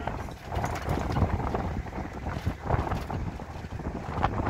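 Wind buffeting the microphone: an uneven, gusting low rumble with scattered knocks.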